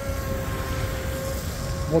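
An RC speedboat's brushless motor whining steadily at part throttle on a cool-down run, the pitch sagging slightly, over a low rumble.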